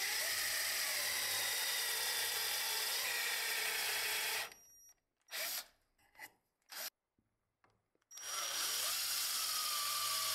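Electric drill boring into the edge of plywood with a twist bit: a steady motor whine over the rasp of the bit cutting wood, stopping about four and a half seconds in. A few short handling sounds follow as the chips are brushed off, then the drill starts boring again near the end, its pitch wavering under load.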